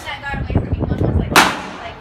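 A single loud, sharp gunshot about one and a half seconds in, with a short fading tail, over low voices.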